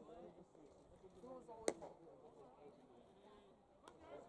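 A single sharp pop of a pitched baseball smacking into the catcher's leather mitt, about two seconds in, over faint chatter from the stands. A lighter click follows near the end.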